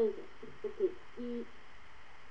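A person's voice heard through a degraded web-conference audio link, garbled into short, unintelligible pitched syllables for about the first second and a half, then only a steady hiss.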